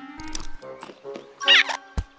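Animated-film soundtrack: light orchestral score with cartoon sound effects, and a loud, wavering squeaky call from a cartoon animal character about one and a half seconds in. A sharp click comes at the very end.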